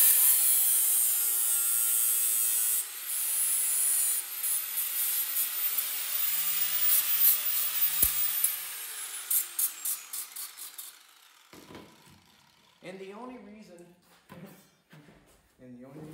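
Corded angle grinder grinding a notch into the edge of a small sheet-metal piece, running at speed with a high whine. It pauses briefly about three seconds in, grinds again, then is switched off about nine seconds in and winds down with a falling whine.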